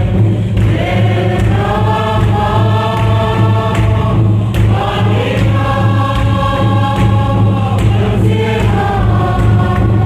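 A church congregation singing a hymn together in many voices, with long held notes in phrases that break about four and eight seconds in. A strong steady low hum runs underneath.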